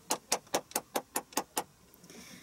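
One person clapping her hands in quick, even claps, about five a second, about eight in all, stopping about one and a half seconds in.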